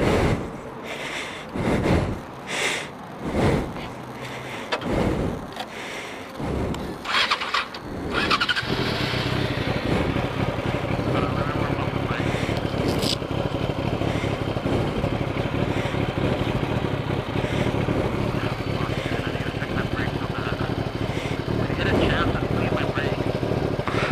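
A few thumps and rustles, then a sport motorcycle engine starts about eight seconds in and settles into a steady idle.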